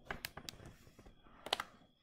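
Several sharp clicks, the strongest about a quarter second, half a second and a second and a half in, over light rustling from the camera being handled and moved.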